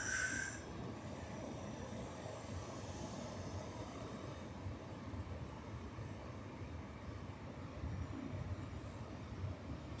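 Steady low rush of distant ocean surf, with a brief high-pitched cry right at the start.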